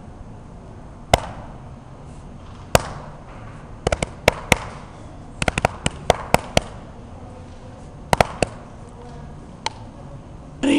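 Sharp, irregular clicks and taps, some single and some in quick clusters of three or four, over faint room hum.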